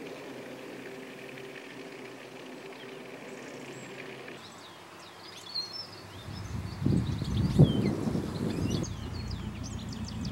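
Open-air countryside ambience with small birds chirping. A faint steady hum runs through the first few seconds, then a low, uneven rumble swells about six seconds in and peaks briefly.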